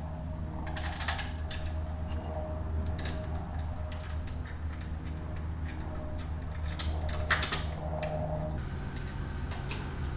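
Scattered small metal clicks and taps of a hex key turning a bolt on a motorcycle's engine cover and of hands handling the metal parts, over a steady low hum.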